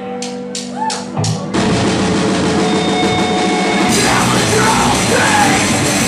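Four quick count-in clicks from the drummer, about three a second, then a live rock band comes in loud with electric guitars, bass and drums about a second and a half in. Vocals join about four seconds in.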